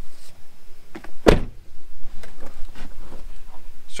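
A single loud thump against the truck door about a second in, among light clicks and rustling as the camouflage netting over the door window is handled.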